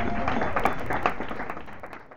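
Small audience applauding, with a few voices mixed in, the clapping fading away over the two seconds.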